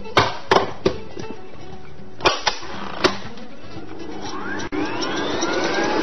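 A few sharp clicks and knocks as a small electric hand mixer is readied over a bowl. About four and a half seconds in, the mixer's motor starts and its whine rises in pitch as it speeds up to cream butter and sugar.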